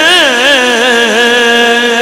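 A man's voice singing a long-held, ornamented line of devotional verse, the pitch wavering up and down in melismatic turns before settling on a steady note, heard through a public-address microphone.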